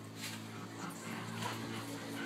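A dog vocalizing in short sounds over a steady low hum, one about a quarter second in and another around one and a half seconds.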